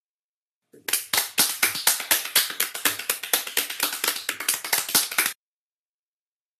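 Hands clapping quickly and evenly, starting about a second in and cutting off suddenly shortly before the end.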